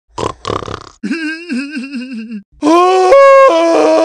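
A cartoon character's voice making wordless sounds: two short grunts, then a wavering pitched cry, then a louder long held cry that steps up and down in pitch.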